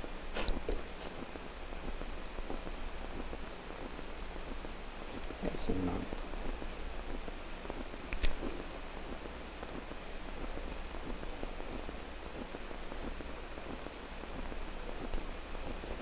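Steady hiss and low hum of an old 16 mm film soundtrack, with a short puff of breath just after the start as water is blown off a wet candle, and a few faint ticks, one sharp one about eight seconds in.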